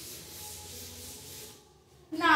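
Felt chalkboard duster rubbing chalk off a chalkboard in quick back-and-forth strokes, a dry scratchy wiping that stops about a second and a half in.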